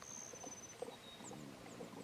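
A gray wolf and a Doberman lapping water from a tub, faint soft laps a few times a second.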